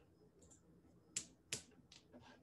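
Computer mouse clicking: two sharp clicks about a third of a second apart just past halfway, a fainter one just before the end, and a faint tick about half a second in, over near-silent room tone.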